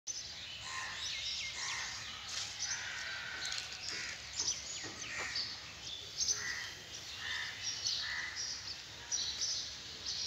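Birds calling and chirping all around, many short overlapping calls in quick succession over a low, steady outdoor background noise.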